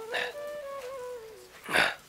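Soft background flute music holding long, slowly changing notes. A short, loud noisy burst comes near the end.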